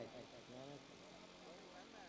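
Near silence, with faint distant voices in the background.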